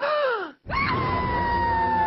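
Cartoon character Bloo's voice: a short gasp falling in pitch, then, after a brief break, a long high-pitched scream of "No" held and slowly falling in pitch over a low rumble.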